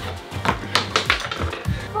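Background music, with a quick run of light taps about half a second to a second in, as a pair of dice is rolled and lands.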